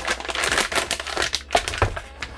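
Plastic poly mailer bag crinkling in a run of irregular crackles as the product box is pulled out of it, with a light knock near the end.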